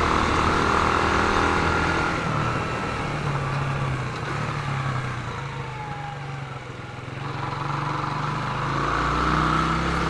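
Yamaha YB125SP's single-cylinder four-stroke engine running at low road speed, heard from the rider's seat with road and wind noise. The engine eases off and quietens about six or seven seconds in, then picks up again near the end.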